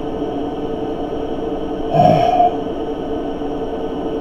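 Steady background hum with a few fixed tones, typical of a webcam microphone's room and electrical noise. About halfway through comes a short breathy vocal sound from the man, with a low falling pitch.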